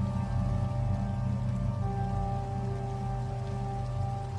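Background music: slow, sustained notes over a steady low drone with a faint even hiss, the notes changing about two seconds in.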